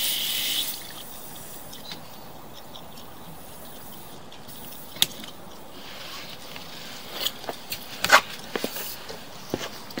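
Faint steady hiss. A sharp single click comes about five seconds in, and a cluster of clicks and knocks follows between about seven and nine seconds in; the loudest is just after eight seconds.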